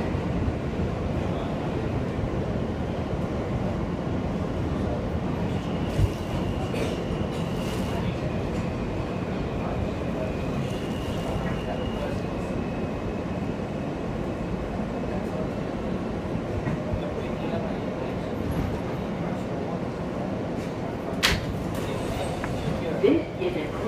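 Interior of an R160A subway car running in service: a steady rumble of wheels and running gear throughout, with a faint high whine that comes and goes through the middle. A sharp knock near the end, as the car's sliding doors open.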